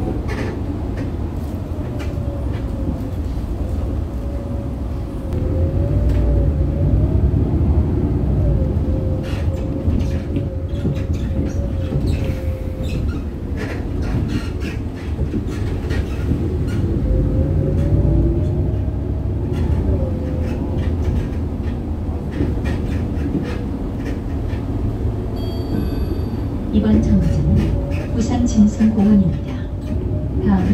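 Riding inside a moving city bus: a steady low rumble of engine and road noise, with a faint whine that drifts up and down in pitch as the bus changes speed.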